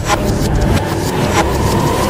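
Instrumental electronic music: a dense passage with a heavy low rumble and a couple of sharp hits, about a second apart.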